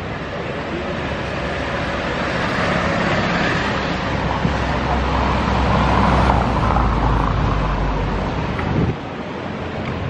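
Street traffic: a motor vehicle's engine rumbling close by over a steady noise of passing cars, growing louder through the middle and ending abruptly about nine seconds in.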